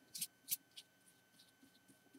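Three short, faint scratchy swishes of a paintbrush stroked across a small paper card, all in the first second.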